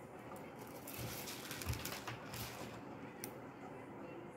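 Faint handling noise: rustling of the beaded fabric and a few light clicks as small scissors are picked up and brought to the thread.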